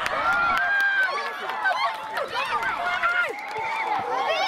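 Many overlapping voices of young players and spectators shouting and calling at once during a youth football match, with no single voice standing out.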